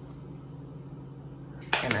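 Quiet room tone with a low steady hum and no distinct sounds, then a woman's voice starts near the end.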